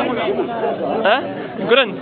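Speech only: several people talking at once.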